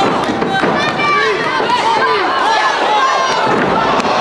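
A crowd of spectators shouting and yelling over one another, many voices at once.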